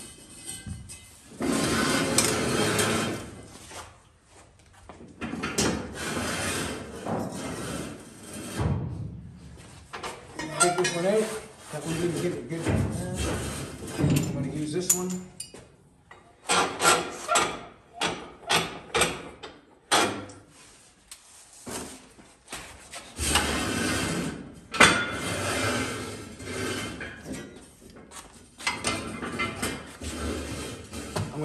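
Steel flat bar being worked and bent in a bench vise: bursts of clanking and scraping metal, with a run of sharp knocks, about two a second, a little past halfway.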